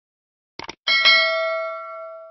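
Subscribe-animation sound effects: a quick double mouse click about half a second in, then a bright notification-bell ding, struck twice in quick succession, that rings on and fades slowly.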